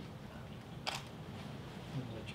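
A camera shutter fires once with a sharp click about a second in, over low, steady room ambience.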